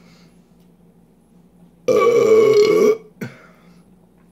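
A loud burp lasting about a second, starting about two seconds in, from a man who has just chugged a bottle of stout.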